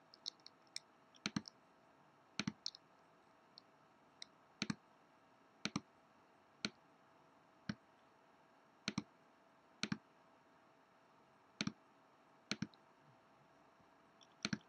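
Computer mouse clicks, sharp and sparse, about one a second and often in quick pairs, as the software is worked on screen.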